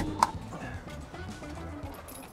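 Two sharp clicks about a fifth of a second apart as the pop-top roof of a VW Vanagon Westfalia camper is pushed up, followed by soft background music.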